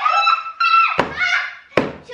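A young woman's high-pitched squeal breaking into laughter, with two sharp thuds, one about a second in and one near the end.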